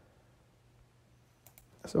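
Near silence, then a few clicks of a computer keyboard about a second and a half in.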